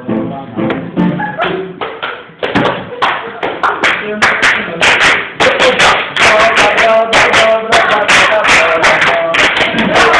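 Live acoustic music: a guitar playing, joined about two and a half seconds in by loud, sharp percussive strikes repeated several times a second, with a voice over it.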